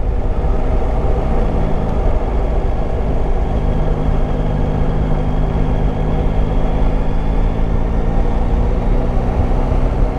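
Yamaha Tracer 9 GT's three-cylinder engine running at a steady, even pace at low road speed, with a constant low rumble of wind and road noise over the rider-mounted camera.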